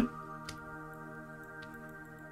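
Soft ambient background music of sustained, steady pad tones, with two faint clicks, one about half a second in and one about a second and a half in.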